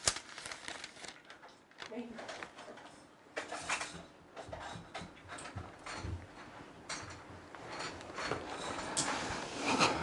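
Quiet room with faint, scattered rustles and light clicks and knocks of handling, and a few soft murmured words.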